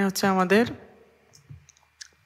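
A voice holding out a short word, then a few faint, short clicks of a computer mouse or keyboard about a second and a half in.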